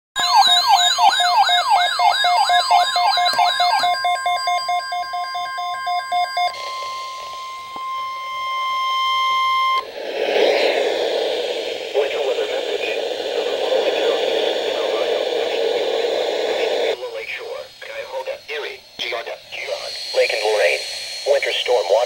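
NOAA Weather Radio receivers going off with an emergency alert for a Winter Storm Watch: a fast warbling siren tone for about four seconds, then steady held alarm tones until about ten seconds in. A hissy stretch follows, and the automated broadcast voice begins near the end.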